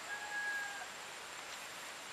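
Steady outdoor background noise with one faint, brief, steady-pitched animal call in the first second.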